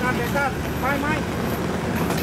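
Men talking in Thai over a steady low background rumble.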